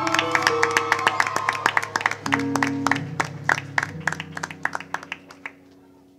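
Held keyboard chords that change every second or so under irregular hand clapping. The clapping thins out and the chords fade away over the last couple of seconds.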